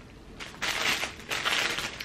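Rustling and crinkling of clothes and their packaging being handled, starting about half a second in.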